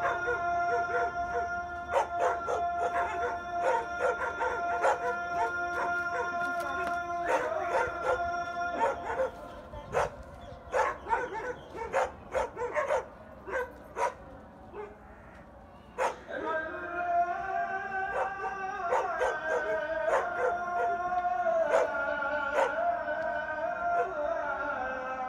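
Several dogs barking and howling: long held howls for the first nine seconds or so, then a stretch of sharp barks alone, then howling again with a wavering pitch from about sixteen seconds on.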